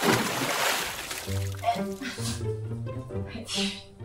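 A splashy whoosh transition sound effect that starts suddenly and fades over about a second, followed by background music with a steady bass line.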